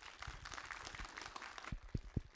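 Audience applauding: a dense patter of many hands clapping that builds up at once and thins out near the end, with a few low thumps near the end.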